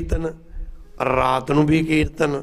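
A man's voice speaking slowly into a microphone, with held, drawn-out syllables and a pause of about half a second shortly after the start.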